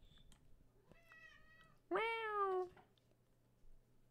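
Domestic cat meowing twice: a faint short call about a second in, then a louder meow that falls in pitch. The cat is at a half-open door that it cannot get through.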